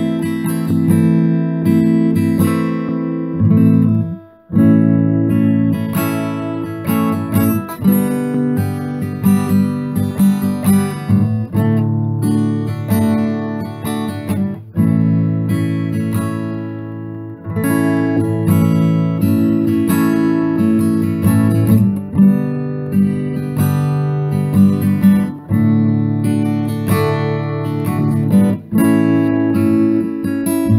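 Instrumental acoustic guitar music, chords strummed steadily, with a brief break about four seconds in.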